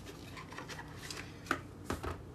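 Tarot cards being handled as they come out of their box, with two short sharp clicks about a second and a half in and just before the end.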